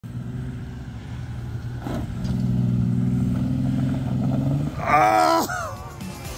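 2001 Ford Explorer Sport Trac's V6 engine running hard at steady revs while the truck climbs through sand. A brief knock comes about two seconds in, and near the end a louder, higher-pitched sound rises and then falls away.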